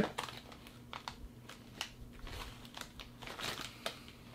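A plastic snack-chip bag crinkling faintly in short, scattered crackles as it is handled.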